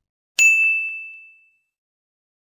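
A single bright notification-bell ding sound effect for a subscribe animation. It strikes sharply about half a second in and rings on one high tone, fading out over about a second.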